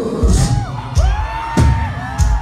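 Live metal band playing loud, with guitar notes sliding up and down in pitch over a few heavy drum hits.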